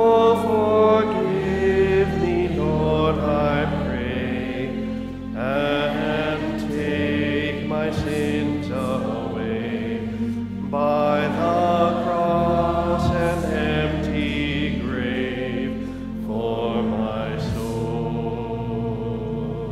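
Church worship song: slow sung vocal lines over held instrumental chords that change every few seconds.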